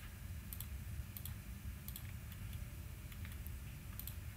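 Computer mouse clicking: short clicks, often in close pairs, about once or twice a second, over a faint low hum.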